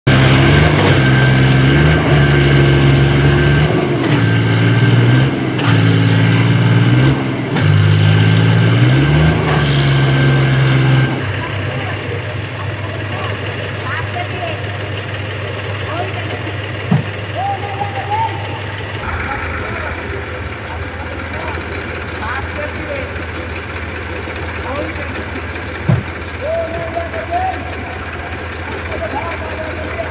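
Eicher diesel tractor engine running hard close by, its pitch rising and falling as it tips its loaded trolley. About eleven seconds in the sound cuts to a quieter tractor engine idling steadily, with people's voices over it.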